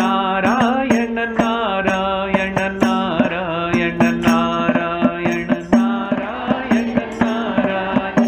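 A male voice singing a devotional chant in a Carnatic style, the melody bending and gliding, accompanied by sharp hand-struck percussion, several strikes a second, from a small frame drum or cymbal that the singer plays himself.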